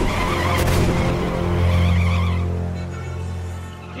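A car speeding off, its engine revving hard and tires squealing for the first couple of seconds, with a gunshot under a second in, over dramatic background music.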